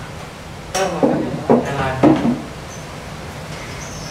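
A woman's voice for about a second and a half, starting about a second in, over a steady low hum.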